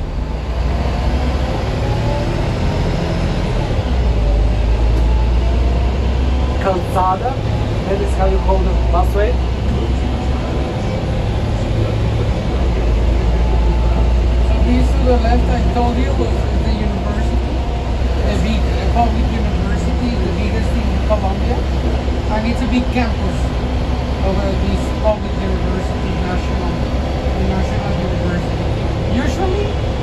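Transmilenio BRT bus heard from inside the cabin while driving: a steady low engine and road rumble that swells and eases a few times, with a rising whine as the bus picks up speed in the first few seconds.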